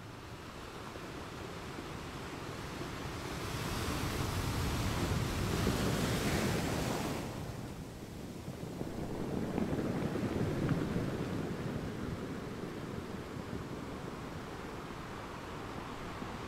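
Sea waves washing in: a steady rush of surf that swells to a loud surge about four seconds in, falls back, and swells again around ten seconds.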